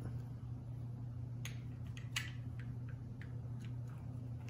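Small skate-wheel herb grinder being twisted by hand, giving a few faint, scattered clicks as it grinds dry cannabis flower, over a steady low hum.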